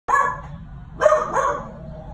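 A crated dog barking: three sharp barks, one at the start and two close together about a second in.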